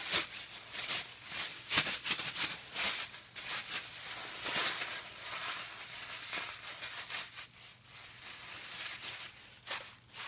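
Thin HDPE plastic shopping bags being scrunched and handled, an irregular crackling rustle.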